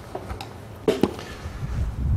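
Hand tools being handled on a metal workbench: a sharp clink about a second in, then a few soft low thuds.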